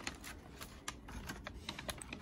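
Handling noise: a run of light, irregular clicks and taps, a few each second.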